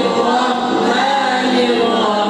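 A group of voices chanting together in unison, a melodic religious recitation with long held and gliding notes.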